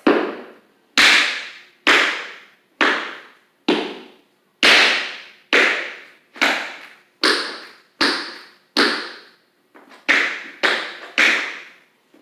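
Tap shoes' metal taps striking a wooden floor in paradiddle steps, about fourteen sharp taps roughly a second apart, each ringing off briefly in the room.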